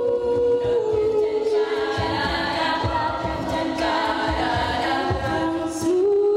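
All-female a cappella group singing live in close harmony, holding chords that shift every second or so, with a regular low beat underneath.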